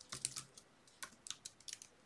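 Computer keyboard typing, faint: a few separate keystrokes, then a quicker run of them in the second half.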